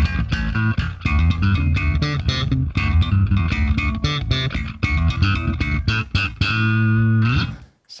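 Electric bass guitar played through a modern clean metal bass tone on a Line 6 Helix LT: a run of quick, clanky, compressed notes with a deep low end, ending on one held note that bends in pitch before it stops.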